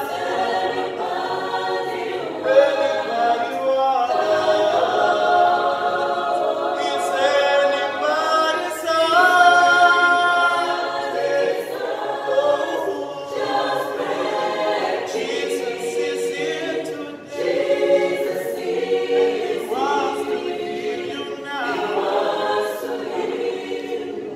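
Mixed choir of men and women singing in harmony a cappella, with no instruments, the voices holding sustained chords. There is a short break in the singing about seventeen seconds in.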